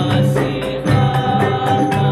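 Men chanting in unison over a gamelan ensemble: bronze-keyed metallophones ringing with regular strikes, backed by frame drums.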